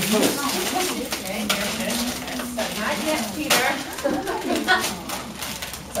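Crinkling of a plastic popcorn bag and popcorn rustling as it is stuffed into gloves, with sharp crackles throughout, under the voices and laughter of people in the room.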